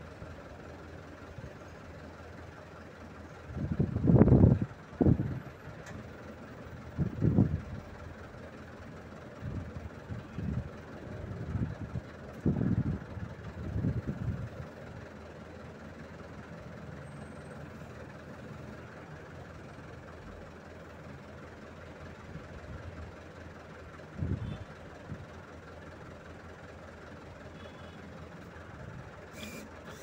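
Truck engine running steadily to drive the hydraulics of a truck-mounted telescopic crane as its boom is raised and extended. Irregular low rumbling gusts come and go over it.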